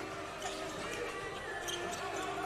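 A basketball being dribbled on a hardwood court, against the faint background of an indoor arena.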